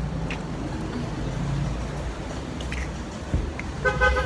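Street traffic noise: a steady low rumble of vehicles with an even hiss of the street, and a short knock about three seconds in.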